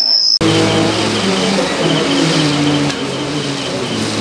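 A short, steady high tone, cut off abruptly about half a second in. Then a dense mix of ritual sounds at an aarti: held chanted or played tones that step in pitch over a noisy background, with a rapid high bell-like ringing that comes and goes.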